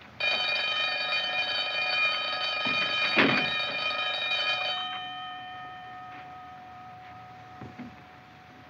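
A barred iron prison gate clanging shut: a loud metallic clang that rings on for several seconds, with a second sharp clank about three seconds in as it is secured.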